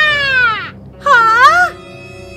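A voice giving two exaggerated cartoon shrieks over background music: the first high and falling in pitch, the second, about a second in, rising and falling like a wail.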